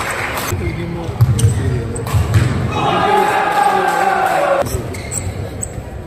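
Indoor badminton hall between rallies: voices of players and onlookers with scattered sharp taps and clicks, echoing in the large hall.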